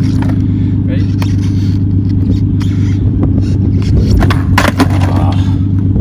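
A car engine idling steadily close by, a low even hum. A few sharp clacks of a skateboard deck and wheels on asphalt cut through it as a trick is tried.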